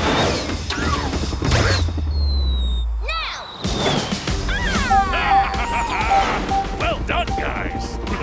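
Cartoon soundtrack of music and sound effects for a small robotic flying creature faking a fall: a low rumble that cuts out about three and a half seconds in, a falling whistle just before it, then warbling, chirpy creature cries over a repeated short beeping tone.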